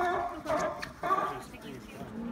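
A series of short pitched vocal calls, about two a second, each bending up and down in pitch, stopping about one and a half seconds in.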